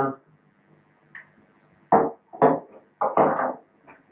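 A man's voice: a pause of nearly two seconds, then a few short syllables that are not clear words.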